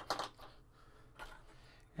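Faint handling of small plastic model-kit parts: a light tap right at the start as a part is set down on the cutting mat, then a soft rustle about a second in, otherwise quiet room.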